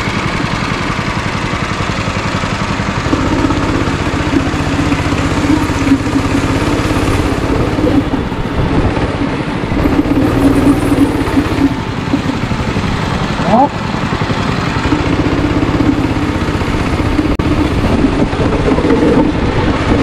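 Go-kart engine running under throttle, heard from the driver's seat; its note rises and holds for a few seconds at a time, then drops back, several times over.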